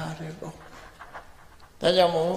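A monk's voice preaching in Burmese trails off, followed by a short pause with a faint breath, and he starts speaking again near the end.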